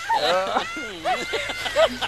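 A high, voice-like vocal sound whose pitch slides up and down in short arcs, with one held note about halfway through.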